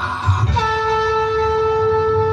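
Conch shell (shankha) blown in one long, steady note that starts about half a second in, over a low repeating drumbeat.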